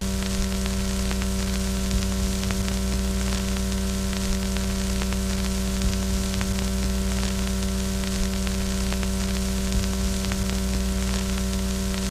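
Television static for a lost signal: a steady hiss with a loud, even electrical hum and faint crackle through it, starting abruptly.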